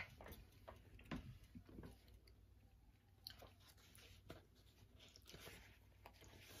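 Faint chewing and mouth sounds of someone eating, with scattered soft clicks and smacks.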